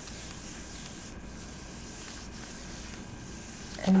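Hands rubbing over a sheet of paper laid on a stencil on a Gelli gel printing plate, a steady papery swish as the print is burnished onto the paper.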